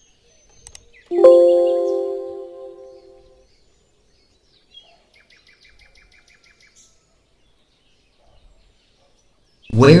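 A single bell-like chime of several steady tones strikes about a second in and rings away over about two seconds. Later comes a faint run of quick, evenly spaced chirps, about six a second.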